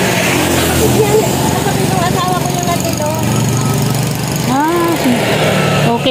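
A motor vehicle driving past close by on a highway: engine and tyre noise grows for about three seconds, then fades away.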